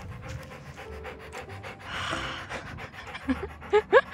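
A Labrador retriever panting quickly with its mouth open, in quick, even breaths.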